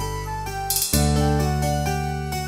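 Instrumental sertanejo karaoke backing track with no lead vocal: sustained chords over a bass line, moving to a new chord about a second in with a brief cymbal-like hiss.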